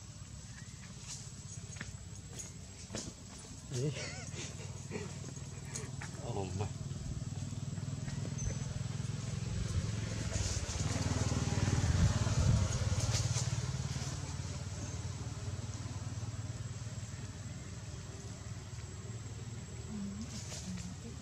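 Low rumble of a passing motor vehicle, swelling to its loudest about twelve seconds in and then fading away, with a person's short laugh and a few voice sounds about four seconds in.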